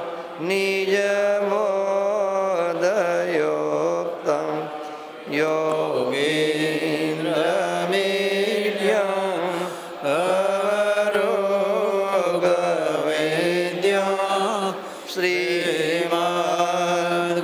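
Devotional chanting by a voice in long, held notes that waver up and down, with brief pauses for breath about five, ten and fifteen seconds in.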